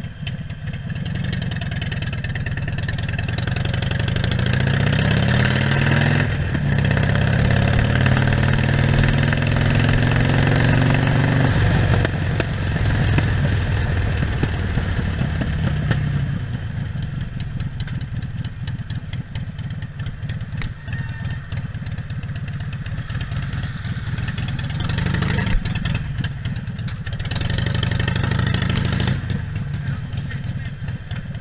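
Motorcycle engine running at idle. Its pitch climbs slowly over several seconds in the first half, then settles into a steady idle.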